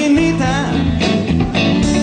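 Live blues-rock band playing an instrumental passage, with guitar to the fore over bass and drums; some guitar notes bend up and down in pitch.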